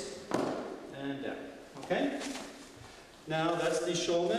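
A thud about a third of a second in as a person lands on the mat in a breakfall, followed by short stretches of a man's voice.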